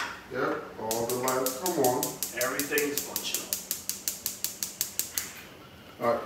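Gas range spark igniter clicking rapidly and evenly, about seven clicks a second, as the burners are lit; it starts about a second in and stops near the end.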